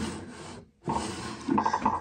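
Wooden drawer of a tea cart sliding in its runners, wood rubbing on wood, in two strokes with a short break between them.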